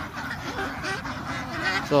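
A large flock of domestic ducks quacking: many short calls overlapping and scattered across the flock.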